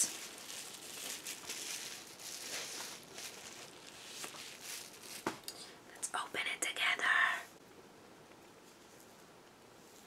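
Soft rustling and crinkling of a plastic bubble-wrap sleeve as an eyeshadow palette is handled and pulled out of it. A louder stretch of handling comes about six seconds in, then near silence for the last couple of seconds.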